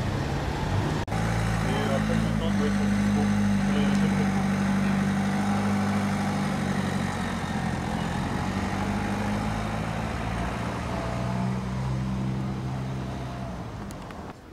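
A vehicle engine running steadily, a low hum that shifts in pitch a couple of times, with street background and some voices.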